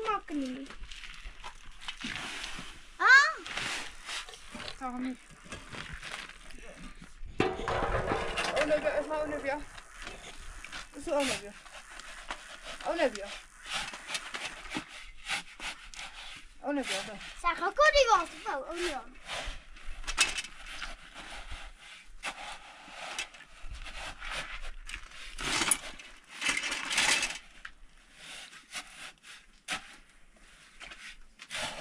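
Steel shovel scraping over a concrete floor and turning a sand-and-cement mix, stroke after stroke, with short pitched calls heard now and then between the strokes.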